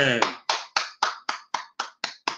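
One person clapping hands in an even rhythm, about four claps a second, heard through a laptop microphone on a video call.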